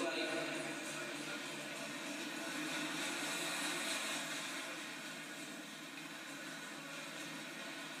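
Steady background noise with indistinct voices, fading slightly in the second half.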